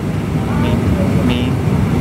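Steady low rumble of an airliner cabin, with faint voices of nearby passengers over it.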